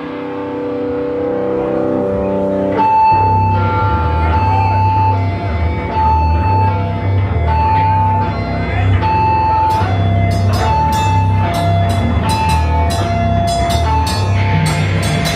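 Live hardcore punk band: a held guitar chord swells for about three seconds, then a guitar riff with bass kicks in, repeating a high note, and cymbal hits join about ten seconds in.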